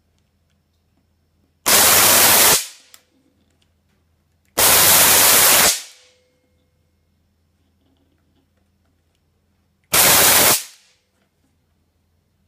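Jacob's ladder with five 2000-volt microwave-oven capacitors wired across it, firing three times. Each firing is a very loud, harsh crackling arc lasting about a second: the first about two seconds in, the second around five seconds, the last near ten seconds. A faint low hum can be heard between them.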